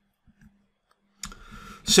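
Near silence for about a second, then a short click about a second in, a soft hiss, and a man's voice starting at the very end.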